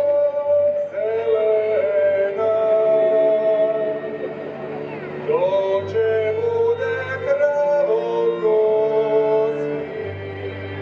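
Moravian Croat folk music: a slow, long-held sung melody that slides up into its notes, accompanied by a string folk band of violins, double bass and cimbalom, the bass notes coming and going.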